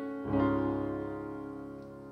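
Piano playing a sustained worship chord in D-flat; a new chord with a deep bass note is struck about a quarter second in and left to ring and fade.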